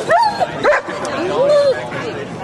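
A dog making three short pitched calls, each rising and falling in pitch, the last one the longest. Crowd chatter runs underneath.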